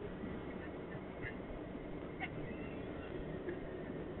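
Steady road and engine noise heard inside a moving car's cabin, with a few faint short ticks.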